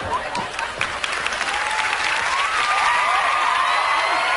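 Studio audience applauding and cheering. From about a second and a half in, a held pitched tone comes in and rises slowly.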